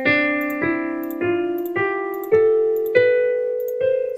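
Sampled piano sound of a browser virtual piano playing a C major scale upward, one note at a time, a new key struck about every half second, each note ringing on and fading.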